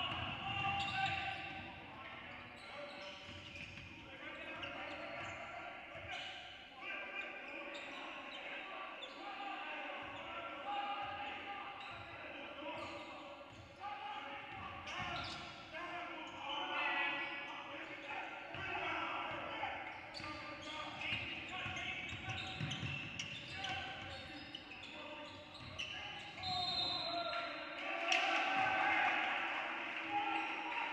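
A basketball bouncing on a hardwood court, with players' and coaches' voices calling out across a large, echoing gym.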